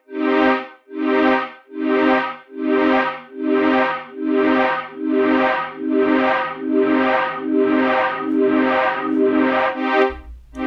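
Software polysynth tone repeating in even pulses, about one and a half a second, each swelling and fading at the same pitch. It runs through Bitwig's Delay+ with feedback just over 100 % and crossfeed stereo on, so the echoes keep coming without dying away.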